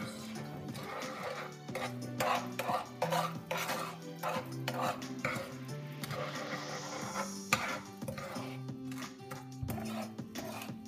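A spoon scraping and clicking against a nonstick frying pan while stirring melted butter and brown sugar, over background music.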